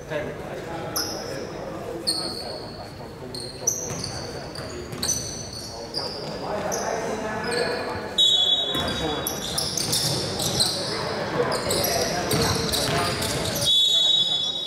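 Basketball game in a gym: sneakers squeak on the hardwood court again and again in short, high chirps, with a few thuds of the ball. A referee's whistle blows for about a second just after the eight-second mark, and again at the very end, over players and spectators talking and calling out in the echoing hall.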